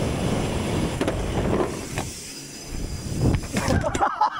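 BMX bike rolling fast on concrete, heard from a rider-mounted camera: a rumble of tyre noise and wind on the mic, with a few sharp knocks from the bike. Shouting breaks in near the end.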